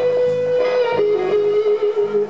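Blues band playing live: an electric guitar solo holds one long sustained note, then drops to a slightly lower, wavering note about a second in, over bass guitar and drums.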